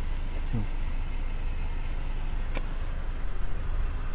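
Steady low rumble of a parked car, heard from inside the cabin, with a single faint click about two and a half seconds in.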